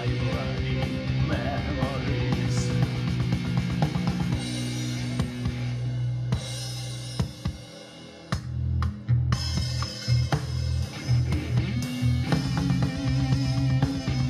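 Electric guitar playing an instrumental passage over a backing track with drums and bass. Just past halfway the backing thins and drops away for about a second, then comes back in.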